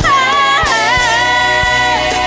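A woman singing a gospel song into a studio microphone: her note slides down about half a second in and is then held steady. Soft low thuds sound beneath the voice.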